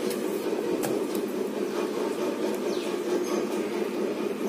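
A steady low drone from a running appliance, with a few light clicks in the first second or so.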